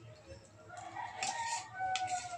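A rooster crowing once, one long call that begins about three-quarters of a second in.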